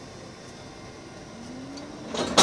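Steady low mechanical hum of a train standing at a station, with a faint low tone rising slowly near the end.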